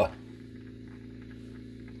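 A steady, low electrical hum made of several even tones, unchanging throughout.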